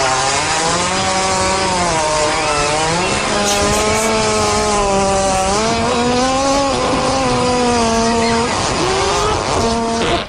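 A hippopotamus farting: one long unbroken blast with a buzzy, pitched tone that wavers and rises a little past the middle, with a brief rougher patch near the end.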